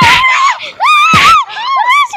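Several young voices screaming and shrieking together in high, wavering cries, with two sharp hits about a second apart as a stick comes down on them.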